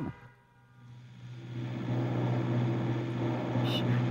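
A motor vehicle's engine fading in over a second or two, then running steadily at a constant pitch.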